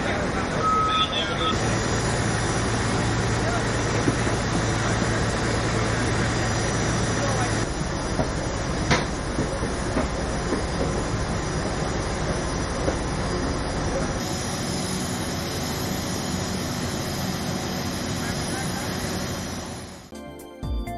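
Steady loud machinery noise of aircraft and ground equipment on an airport apron, with people talking over it. A hum sits under the noise for the first several seconds, and the background changes abruptly a couple of times.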